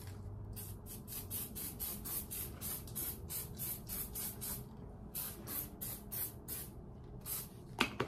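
Aerosol hairspray can sprayed onto hair in many short, quick hissing bursts, a few a second, with a brief pause about halfway through before a second run of bursts.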